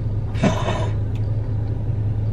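Steady low rumble of a car's engine idling, heard from inside the cabin, with a person's sigh about half a second in.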